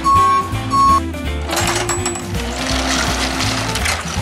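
A box delivery truck's reversing alarm beeping twice in the first second, each beep a steady high tone, over background music with a steady beat.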